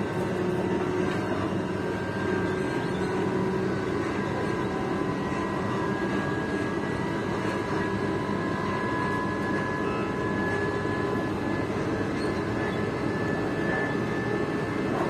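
Steady running noise of an electric passenger train heard from inside the carriage, with a faint high whine from the drive under the steady noise.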